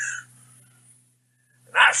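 A man's voice trailing off after a laughing exclamation, then a second of near silence before he starts speaking again near the end.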